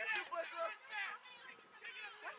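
Indistinct voices talking and calling out, several overlapping, with no words clear enough to make out.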